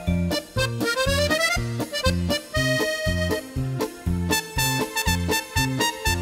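Instrumental break of an Italian liscio (Romagna ballroom) dance tune: an accordion plays the melody over the band's steady bouncing bass and drum beat, with a rising run of notes early on.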